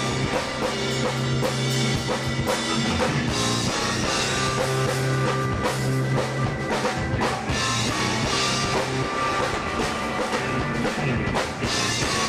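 Live rock band playing an instrumental passage with no singing: drum kit, electric guitar and electric bass, with a strong sustained bass line under steady drum hits.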